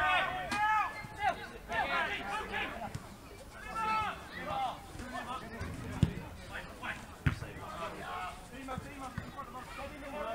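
Players shouting calls across a grass football pitch, then a football kicked hard about six seconds in, followed by another thud a little over a second later.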